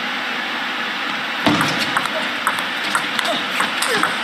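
A table tennis ball clicking against the rackets and the table in a quick rally, starting about a second and a half in, over steady background noise in the hall.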